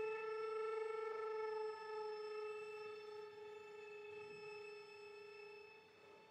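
Solo violin holding one long bowed note that slowly fades away.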